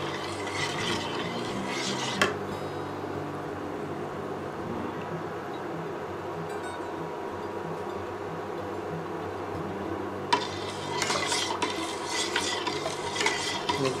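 A stainless steel ladle stirring sugar into warm water in a stainless steel pot, clinking and scraping against the pot as the sugar dissolves. The stirring stops about two seconds in, leaving a low steady hum, and starts again about ten seconds in with brisker clinks.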